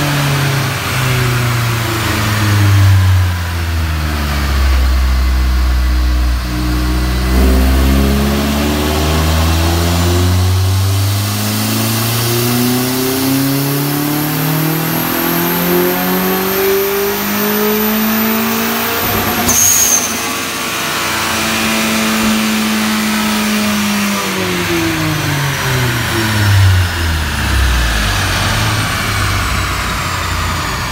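Turbocharged four-cylinder of a 2011 Hyundai Genesis Coupe 2.0T with a GT28 turbo, run under load on a dyno. The revs fall at first, then climb steadily for about twelve seconds with a rising high whine. About twenty seconds in there is a sudden sharp burst as the throttle closes, and the revs fall away.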